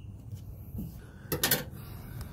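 Faint background noise, then a brief cluster of knocks and rustles about one and a half seconds in, as the camera is handled and moved.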